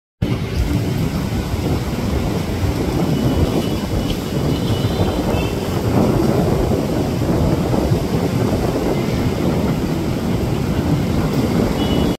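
Steady wind rumbling on the microphone over the wash of surf on a beach.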